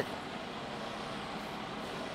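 Steady background vehicle noise, an even hum and hiss with no distinct events, as of trucks running around a truck lot.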